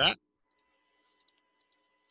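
A few faint, scattered computer mouse clicks, spread between about half a second and a second and a half in.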